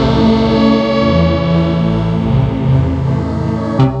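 Pad 1 software synthesizer playing its 'Dark Pad' preset: sustained, slowly changing chords. Just before the end it switches to a new preset with sharper, repeated notes.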